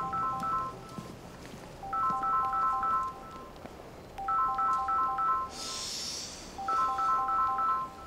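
Smartphone ringtone for an incoming call: a short melodic run of quick notes, repeating about every two and a half seconds. A brief soft hiss comes a little past the middle.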